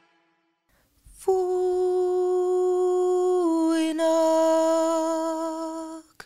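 Women's voices humming a cappella: after a second of near silence, one long steady note starts, dipping slightly in pitch about halfway through.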